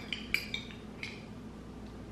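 Metal spoons clinking and scraping against ceramic bowls while eating: a few light clinks in the first second.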